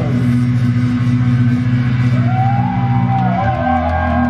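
Live rock band playing: low bass notes repeated rapidly under electric guitar, with a sustained, wavering guitar line coming in about halfway through. No singing.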